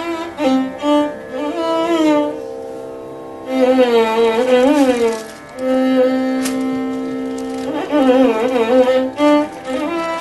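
Carnatic violin playing melodic phrases full of sliding ornaments over a steady drone, with short pauses between phrases and a long held low note in the middle.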